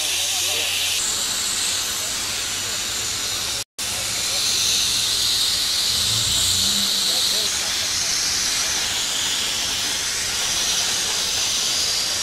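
A steady hiss that cuts out for an instant nearly four seconds in.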